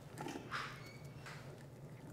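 Chopped carrots dropping into a stainless steel Instant Pot insert: two faint, soft patters in the first second.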